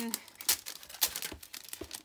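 Clear plastic sleeve around a pack of cardstock crinkling as it is handled, with irregular sharp crackles.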